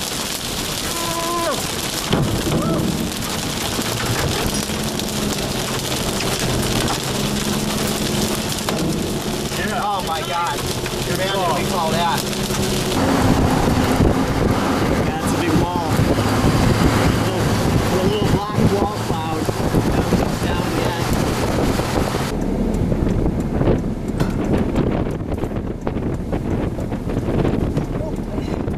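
Heavy rain and wind noise from a vehicle driving through a thunderstorm, with steady low tones and indistinct voices underneath. The rain hiss cuts off suddenly about 22 seconds in, leaving quieter lower sounds.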